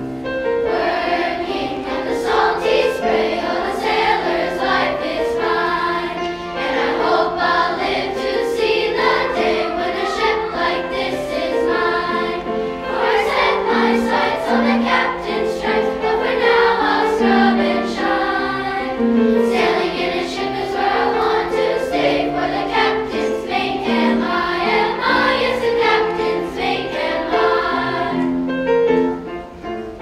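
Children's choir singing with grand piano accompaniment, phrase after phrase with short breaks between.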